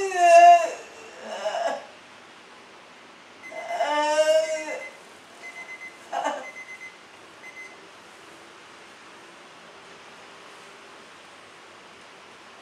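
An elderly woman's long, wavering moans without words, one at the start and one about four seconds in, with shorter ones between and a brief one around six seconds, as her leg is bent and moved. Faint high beeps sound in the middle.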